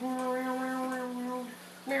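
GoPro Karma drone sounding its built-in electronic sound effects: one long steady tone of about a second and a half, then a second tone starting near the end.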